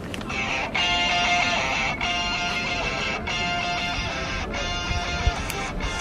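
Anime theme music played from a smartphone's speaker: a steady tune with a regular pulse, its chords breaking and changing about every second and a quarter.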